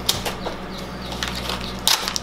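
Wooden knife cutting through the plastic wrap of a summer sausage package: scattered crinkles and clicks of the film, with a louder crackle near the end.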